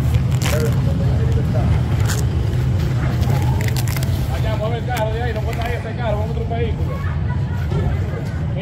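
Indistinct voices in a street recording over a steady low rumble, with a few sharp clicks in the first few seconds.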